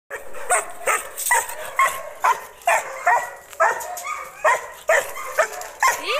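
A dog barking steadily and repeatedly, about two barks a second.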